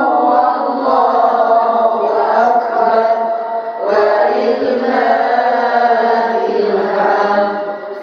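A woman reciting the Qur'an in a melodic, chanted style into a microphone, holding long drawn-out notes, with a short pause for breath about four seconds in.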